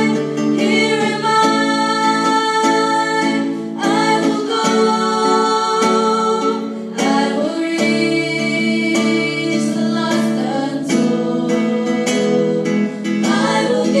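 A small group of girls singing a song together into microphones, with acoustic guitar accompaniment; the voices hold long notes that change every second or two.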